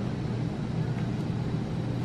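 Steady low hum of room background noise, with faint paper rustling and a light tick about a second in as a folded instruction leaflet is opened out.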